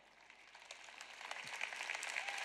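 Audience applause, starting about half a second in and growing steadily louder.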